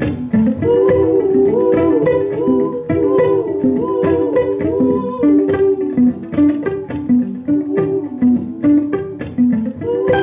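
Violin plucked pizzicato while held like a guitar, a quick repeating figure of plucked notes layered over itself by a Digitech JamMan loop pedal.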